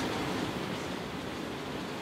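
Room tone: a steady, even hiss.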